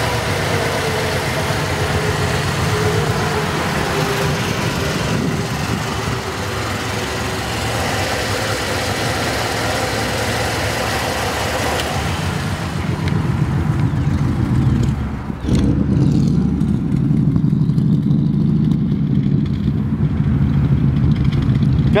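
A 1950 Ford flathead V8 idling, heard close at the open engine bay with a busy mechanical clatter and hiss. From about fifteen seconds in the sound turns deeper and louder, the exhaust note heard from the back of the car.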